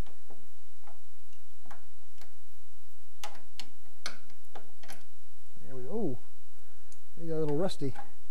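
Scattered light metallic clicks and ticks of a screwdriver and wrench working a stubborn screw on a steel footman loop mounted on a Willys MB jeep's body tub.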